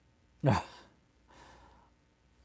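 A man's soft sigh, an exhaled breath about a second and a half in, just after a short spoken "yeah".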